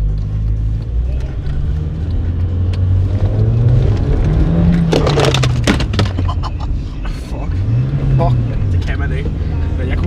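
Car engine heard from inside the cabin, revving up and dropping back twice as the driver tries to make the car slide on a wet road. A short burst of noise comes about five seconds in.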